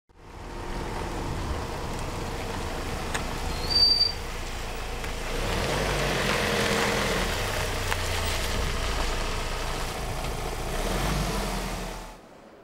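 A Ford Transit minibus engine running as the van drives slowly along the street and approaches, growing louder from about halfway. A brief high squeak about four seconds in is the loudest moment.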